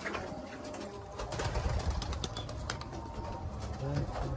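Domestic pigeons cooing, with a few short clicks scattered through.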